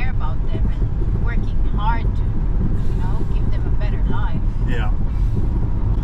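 Steady road and engine rumble inside the cabin of a moving car, with faint snatches of voices over it.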